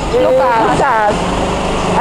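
A go-kart's motor running as the kart drives past close by, settling into a steady low hum about a second in, under people talking.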